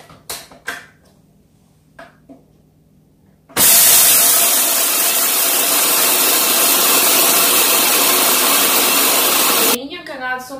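Ninja blender's motor running on its high setting, grinding coffee beans: a loud steady noise that starts suddenly about three and a half seconds in and cuts off just before the end. Before it, a few light knocks as the lid is fitted on the jug.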